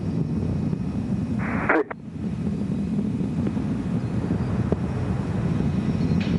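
Space Shuttle Discovery in ascent: a steady, deep rumble from its two solid rocket boosters and three main engines as the main engines throttle back up.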